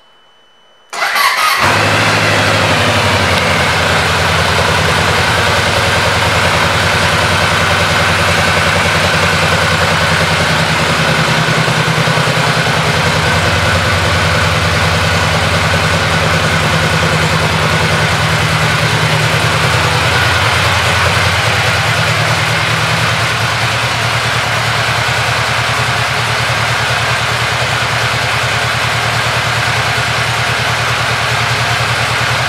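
A 2020 Yamaha VMAX's 1,679 cc V4 engine is started about a second in, catches at once and settles into a steady, loud idle.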